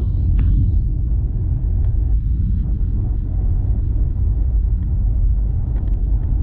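Boeing 737 cabin noise on the descent to landing: a steady low rumble of engine and airflow noise heard from a window seat, with a few faint ticks.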